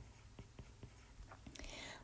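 Near silence, with a few faint taps of a stylus on a tablet's glass screen during handwriting, and a faint hiss near the end.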